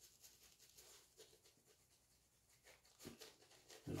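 Faint soft swishes of a synthetic shaving brush working lather over the face, in quick repeated strokes.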